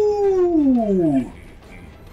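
A man's long drawn-out "oooh" exclamation, held on one note and then sliding down in pitch until it stops about a second and a quarter in.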